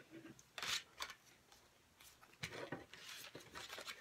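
Playing cards being counted through the hands: a few short, sharp papery flicks and rustles, the sharpest about a second in, with softer ones in the second half.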